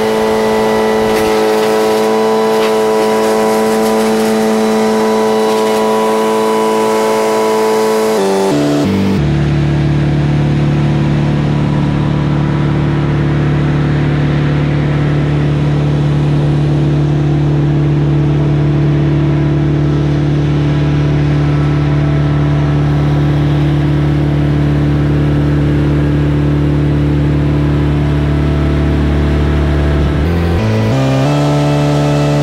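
A large engine running at a steady speed, then slowing to a lower steady speed about nine seconds in and changing speed again at the very end.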